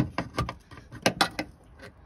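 Screwdriver prying a rubber seal off a heater core's pipe stubs: a string of irregular sharp metal clicks and scrapes, the loudest right at the start.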